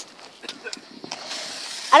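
A lit smoke bomb hissing steadily, the hiss starting about a second in after a few faint clicks.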